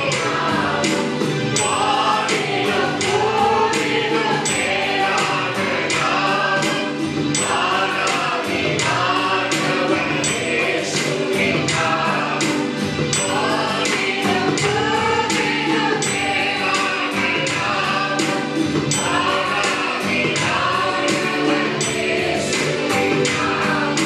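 Several men singing a Christian worship song together into microphones, over musical accompaniment with a steady beat.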